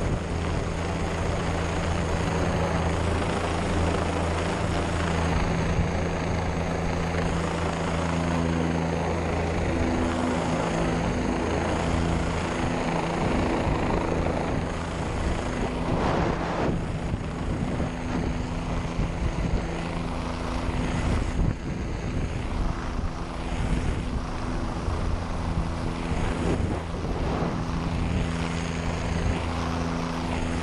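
Helicopter flying overhead, with a steady low rotor and engine hum and a thin high turbine whine, heard from the end of a long line hanging beneath it. A rushing noise of air runs over it and turns rougher about halfway through.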